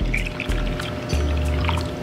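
Water poured from a drinking glass into a ceramic bowl of dry cream of rice, over background music with a steady bass.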